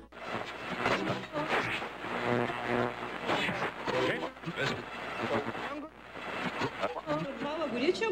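Indistinct voices over a dense, noisy background, rising and falling in level without clear words.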